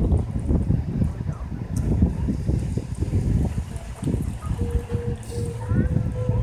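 Wind buffeting the microphone: a loud, irregular low rumble. Near the end a faint steady hum breaks in and out in short stretches.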